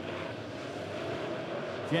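Dirt-track modified race cars' engines running at speed as the field goes around the oval: a steady mass engine drone with a faint, slightly rising tone.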